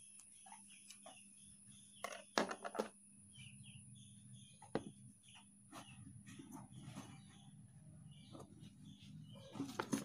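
Faint birds chirping in the background with many short chirps, over a low hum. A few short knocks, about two seconds in and again near the middle.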